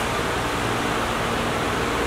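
Steady, even hiss of background noise, with no distinct knock, voice or other event.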